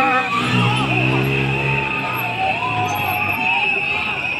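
Protest crowd noise: many voices shouting and chanting over one another, with a steady high-pitched tone running underneath.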